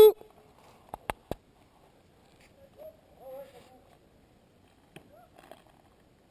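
Paintball markers firing: three quick sharp pops about a second in and two more near the end, with a faint distant voice calling out in between.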